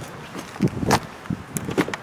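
Driver's door of a 2013 Chevrolet Suburban being opened: a sharp latch click about a second in, among soft thumps of handling and footsteps, with a few lighter clicks near the end.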